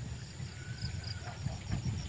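Crickets chirping faintly in a steady high pulse, about four chirps a second, over a low rumble.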